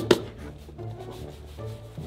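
Background music with a short laugh at the very start, over rustling and rubbing as fake snow is brushed and shaken off clothes and skin.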